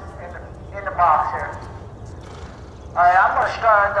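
A man talking in short phrases, over a steady low rumble.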